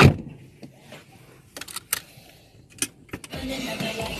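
A heavy thump, then several sharp clicks in a quiet stretch; music starts playing shortly before the end.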